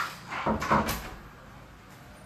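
A few short bumps and scrapes of things being handled, bunched in the first second, the loudest a little under a second in, then only a faint steady background.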